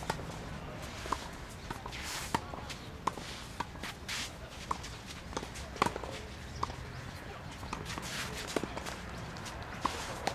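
Tennis rally: sharp pops of the racket striking the ball roughly once a second, with the players' shoes scuffing and sliding across the court between shots.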